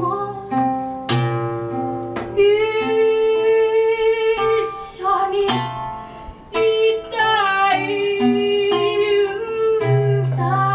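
Live acoustic music: a melodica (pianica) plays long held notes over strummed acoustic guitar, with a woman singing.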